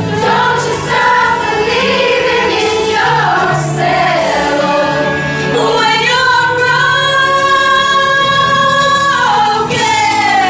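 A women's choir singing, with one long held note of about two and a half seconds near the end.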